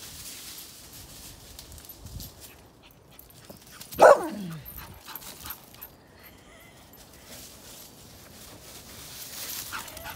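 A dog at play gives one loud whining yelp about four seconds in. The cry falls steeply in pitch from high to low over about half a second.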